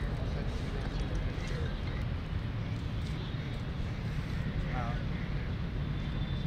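Outdoor background noise: a steady low rumble with faint distant men's voices calling out a couple of times.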